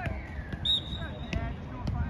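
Referee's whistle blown once for a foul, a single steady shrill note of well under a second. A couple of sharp knocks follow near the end.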